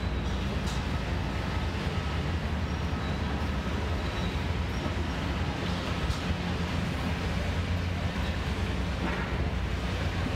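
Steady low diesel engine drone of a high-reach demolition excavator working a building, mixed with city street noise, with a couple of faint knocks.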